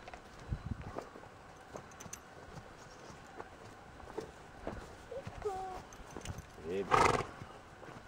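A pony walking on grass while being led, its hooves faintly thudding. Near the end there is one short, loud, breathy blow from the pony.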